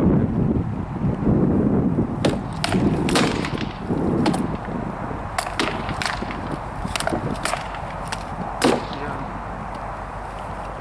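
Rattan swords striking shields and armour in armoured sword sparring: about a dozen sharp, irregular knocks that begin about two seconds in and stop near the end, over a low rumble of wind on the microphone.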